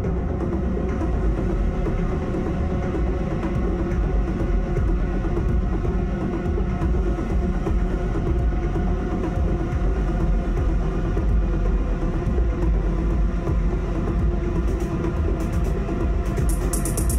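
Live electronic noise music: a dense, unbroken drone with heavy bass and several held tones layered over it. A rapid high stuttering texture comes in near the end.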